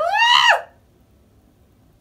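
A woman's short, high-pitched cry, rising and then falling in pitch over about half a second, in pain from the burning of a TCA chemical peel on her face.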